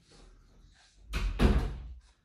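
A dull thump with rustling about a second in, as a leg swings back in and the knee comes down on a floor exercise mat.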